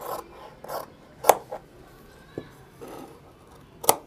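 Large tailor's shears cutting through cotton shirt cloth on a table: a series of short rasping snips, about half a dozen, with two sharp clicks, one a little past a second in and one near the end, as the loudest sounds.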